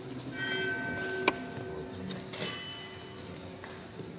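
A bell struck twice, about a third of a second in and again just after two seconds, each strike ringing on and fading. A sharp click comes between the two strikes.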